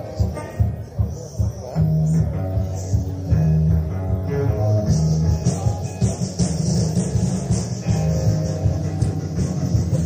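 Live rock band playing a loose, jam-like song: electric guitar and bass guitar over a steady beat, from a cassette tape recording of the gig.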